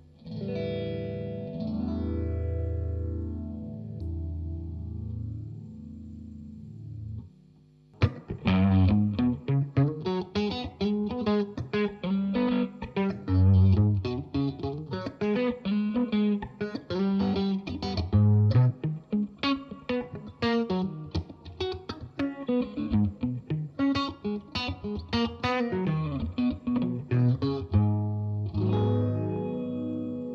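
Electric guitar played through a PastFX Fox Foot Phaser Deluxe set to ten-stage phasing. Held chords swell with a slow, smooth sweep up and down for the first seven seconds or so. After a brief gap, a busy run of fast picked notes follows, still phased.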